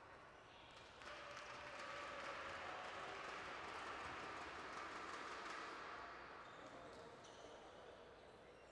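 Faint sports-hall background: a distant murmur of voices that swells about a second in and fades near the end, with light clicks of table tennis balls bouncing at other tables.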